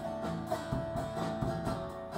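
Live worship music led by an acoustic guitar strummed in a steady rhythm, about four strokes a second.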